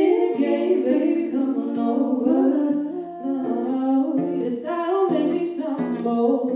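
Two women singing a slow love song together, accompanied on acoustic guitar, with long held notes that glide from pitch to pitch.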